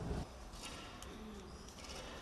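Pigeons cooing faintly, with a few short bird chirps, after a louder sound that cuts off abruptly about a quarter second in.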